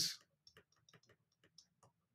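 Faint, irregular ticks and taps of a stylus tip on a tablet surface while words are handwritten.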